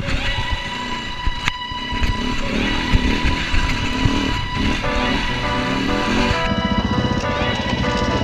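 Music playing over the sound of an off-road motorcycle's engine running.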